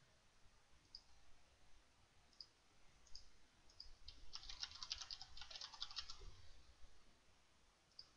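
Faint, single clicks of a computer mouse, then about four seconds in a quick two-second burst of typing on a computer keyboard as a short phrase is keyed in.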